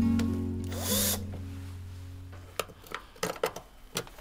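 Cordless drill-driver gives one short whir about a second in while working a headlight screw on a classic Rover Mini, over background music that stops a little after two seconds. In the last second and a half come several sharp clicks.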